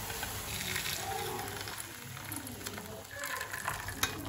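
Hot jaggery syrup fizzing as it is poured from a stainless steel pan through a steel tea strainer into a steel bowl, with a few light clicks of metal near the end.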